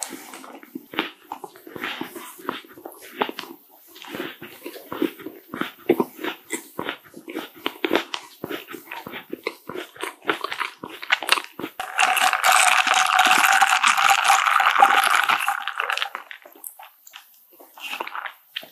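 Close-miked chewing with wet mouth clicks and smacks, irregular and continuous. About twelve seconds in, a louder, steady rustling noise lasts for about four seconds as the plastic boba milk tea cup is handled.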